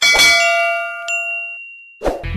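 Bell-like chime sound effect of a subscribe-button animation. It opens with a sharp ringing strike that fades over about a second and a half, then a second, higher ding about a second in rings on to the end.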